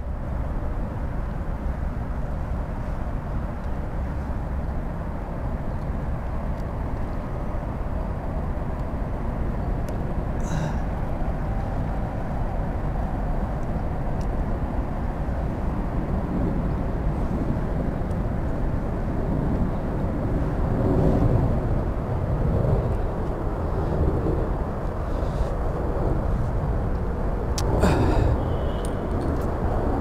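Steady wind rumble on the microphone, strongest in the low end, with a few brief handling clicks and rustles about ten seconds in and again near the end.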